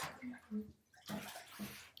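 Bathwater sloshing softly as a person shifts in the tub: a couple of short plops, then a soft swish about a second in.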